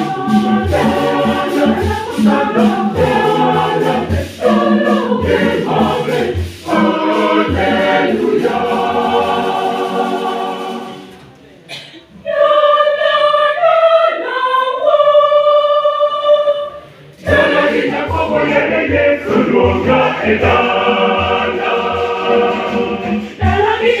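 Mixed choir singing a gospel song, backed by a pair of conga drums. About eleven seconds in the drums and lower voices drop away and higher voices sing alone for about five seconds, then the full choir and drums come back in.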